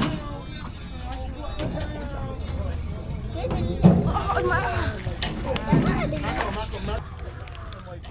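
Several people talking and calling out, loudest about four seconds in, over a low steady rumble.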